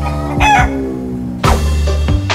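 A chicken calling, with a short wavering call about half a second in, over background music.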